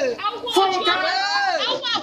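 Boys' voices: lively talk from young speakers, in a language the recogniser did not write down.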